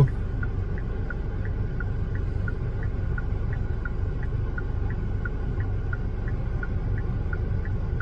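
A car's indicator flasher ticking steadily, about three ticks a second, alternating higher and lower clicks, over the steady low rumble of the stopped car idling, heard inside the cabin.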